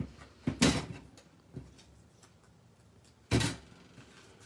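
Tape-runner adhesive rolled along the back of a small paper sentiment strip: two short rasps, one just after the start and one near the end, with faint paper handling between.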